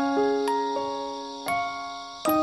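Slow, gentle solo piano music: a handful of notes and chords struck singly, each left to ring and fade before the next.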